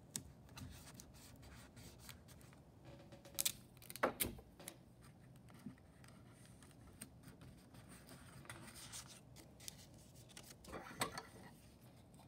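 Faint rubbing of fingers pressing tape down onto a popsicle stick and paper, with a few sharp clicks: two loud ones about three and a half and four seconds in, and another cluster near the end.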